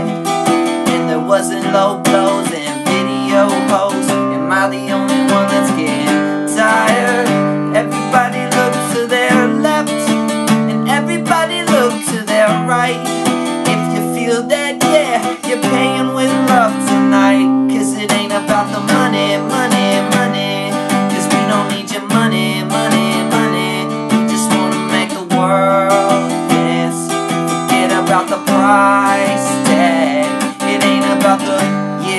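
Acoustic guitar strummed in a steady rhythm, its chords changing every few seconds.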